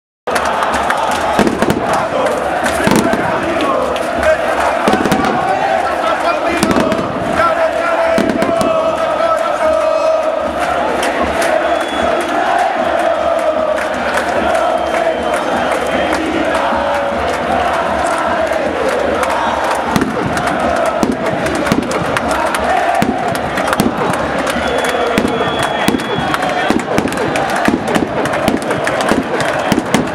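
Large football crowd in the stands singing a chant together, with frequent sharp pops and bangs breaking through it.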